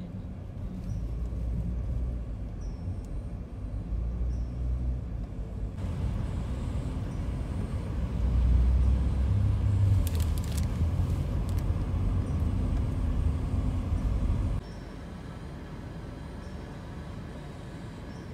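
Low, steady rumble of a car heard from inside the cabin, changing level abruptly at cuts and dropping to a quieter rumble about three-quarters of the way through.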